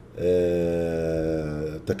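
A man's voice holding one long hesitation sound, "uhhh", at a level pitch for about a second and a half.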